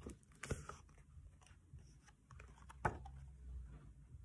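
Faint handling of a hardcover picture book as a page is turned and the book is held up: soft paper rustling and a few light knocks, the sharpest about half a second in and again near three seconds.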